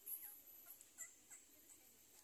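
Near silence outdoors, broken by about five faint, short chirps spread through the two seconds, like distant birds calling.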